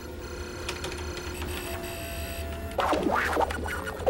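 Computer sound effects as a terminal connects to a database: a string of short electronic beeps and chirping tones at different pitches, then a brighter warbling electronic burst about three seconds in, over a steady low hum.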